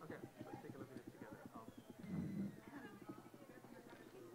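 Faint, indistinct talk of several people in a hall, over a rapid run of light knocks or clicks, with a louder low burst of voice a little after two seconds in.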